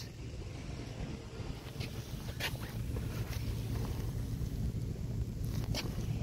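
Steady low outdoor rumble of background noise, with a few faint short clicks.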